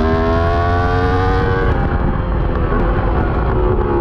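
Yamaha R1 inline-four sportbike engine, recorded onboard, pulling hard with its pitch rising. About two seconds in it drops off as the throttle closes for braking and a downshift.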